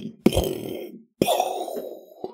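A person coughing: two harsh coughs about a second apart, part of a run of coughs.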